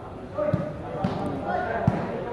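Spectators chattering, with a volleyball thudding three times at uneven intervals.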